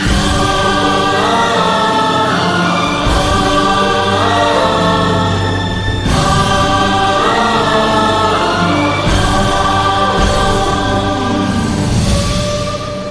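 Karaoke backing track playing an orchestral intro with wordless choir-like voices, its chords shifting every few seconds.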